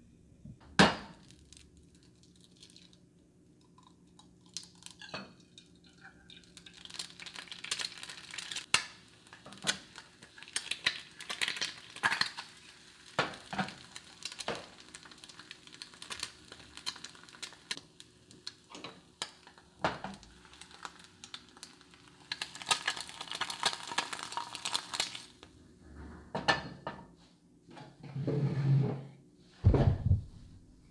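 Kitchen cooking clatter: a frying pan and utensils clinking and knocking on a gas stove while an egg is cooked, with many short sharp clicks. The loudest is a single knock about a second in, and there are stretches of hissy noise in between.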